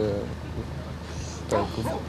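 A young man's voice trailing off on a drawn-out vowel, a pause of about a second with a steady low hum underneath, then his speech resuming.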